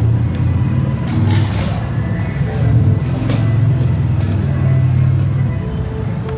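Low, droning group chanting that carries on throughout, with a few sharp clicks about one, three and five seconds in.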